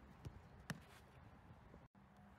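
Faint outdoor background with a soft thump about a quarter second in and one sharp, louder thump about two-thirds of a second in, from a goalkeeper's footwork drill on an artificial-turf pitch. The sound drops out for an instant near the end.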